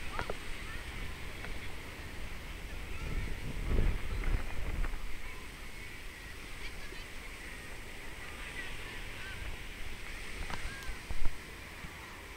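Faint honking bird calls over a low outdoor rumble that swells for a couple of seconds around four seconds in, with a short thump near the end.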